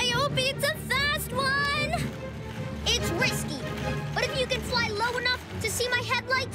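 A high-pitched voice speaking with a swooping, lively pitch over background music.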